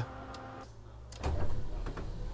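Electric actuator of a motorhome's powered roof window running as the skylight tilts open: a low electric hum that grows louder just over a second in.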